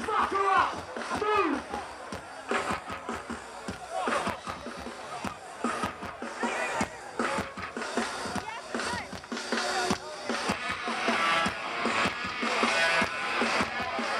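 Live hardcore punk band music heard from inside the crowd through a phone microphone, with a shouted voice over it and sharp hits throughout; pitched sound builds up loud toward the end.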